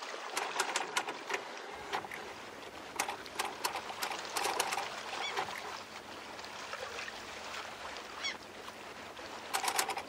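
Sea water lapping and splashing in small irregular slaps over a steady wash.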